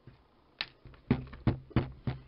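Four sharp knocks and taps, roughly half a second apart, from things being handled and set down on a work table.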